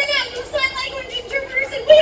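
High-pitched voices talking and calling out, children's voices among them.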